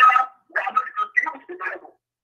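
Speech: a voice talking in short indistinct phrases, the words not made out.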